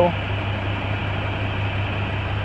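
International MaxxForce DT inline-six diesel idling steadily, heard from inside the cab as a constant low hum with an even hiss over it.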